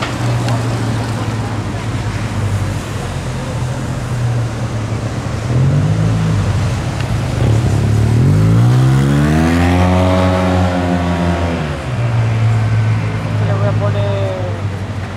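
Street traffic engines: a steady low engine drone, then a vehicle's engine note rising in pitch as it accelerates about eight seconds in, holding for a couple of seconds, and falling away near the end.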